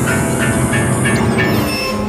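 Loud, dense passage of piano with electronic tape: a harsh, noisy mass of sound with a pulse repeating about four times a second. A high hiss in it cuts off about a second in.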